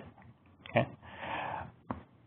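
A man's short spoken "okay?" followed by an audible breath lasting about half a second, then a brief click just before he speaks again.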